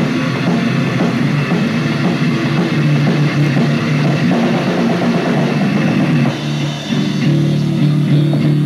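Rock band playing live: electric guitar, bass and drum kit, with a brief drop in loudness about six seconds in before the band comes back in full.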